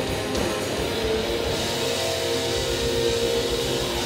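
Pop-punk band playing live through a PA: electric guitars and drums in an instrumental stretch without vocals.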